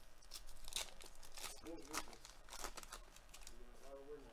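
Trading-card pack wrapper being torn open and crinkled by hand: a string of short, quiet crackles.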